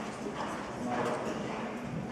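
Hoofbeats of a horse cantering on sand arena footing, a soft stride about every half second.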